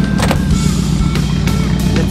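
Nissan 240SX S13 engine running steadily through aftermarket headers and a full ISR exhaust with stock catalytic converter, with background music over it.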